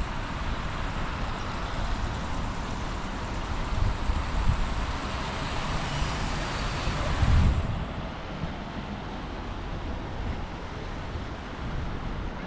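City street traffic noise: vehicles passing on wet roads, a steady hiss with low rumbling swells that thins out about seven and a half seconds in.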